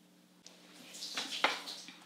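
Coffee cupping spoon and ceramic cups being handled: a faint click, a short airy hiss, then a sharper clink about one and a half seconds in.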